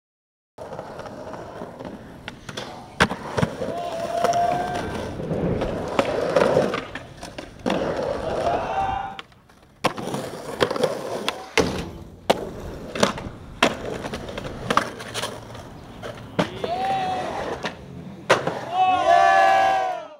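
Skateboard wheels rolling on pavement, with sharp pops and clacks of tricks and board landings at irregular moments. Voices shout several times, loudest near the end.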